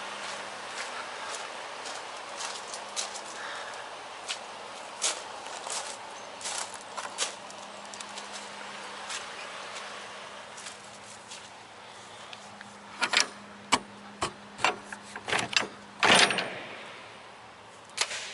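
Footsteps on wet gravel and grass as light scattered clicks, then, about two-thirds of the way through, a run of loud metal clanks and rattles from a semi-trailer's rear swing door lock bar and hardware as the door is unlatched and swung open.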